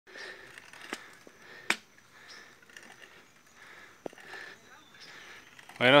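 Heavy, rapid breathing of a cyclist close to the microphone, a breath roughly every second, with a few sharp clicks, the loudest about a second and a half in.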